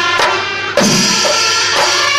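Loud live temple-festival procession music: a held wind-instrument tone over drums, with a heavy drum stroke about three-quarters of a second in.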